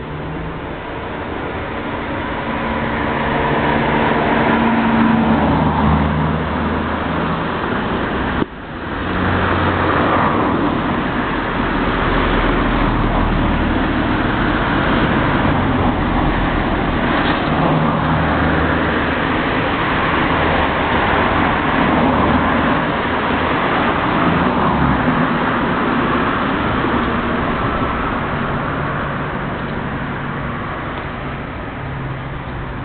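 Steady road traffic noise, with the low hum of engines coming and going as vehicles pass, and a brief sudden dip about eight seconds in.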